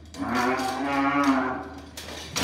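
A young bucking bull bellowing as it bucks: one long call lasting about a second and a half.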